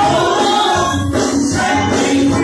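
A women's praise team singing a gospel song together in harmony, over instrumental backing with a steady low bass line.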